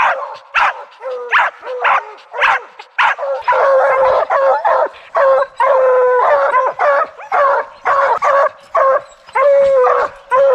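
A pack of bear hounds barking and bawling at a treed bear, the sign that they have it up a tree. Short barks come about two a second, then from about three seconds in several dogs sound at once with longer, drawn-out bawls.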